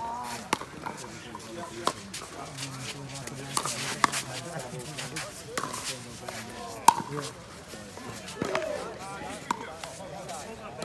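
Pickleball rally: paddles striking the plastic ball in a series of sharp pocks at irregular intervals, about seven in all, the loudest about seven seconds in.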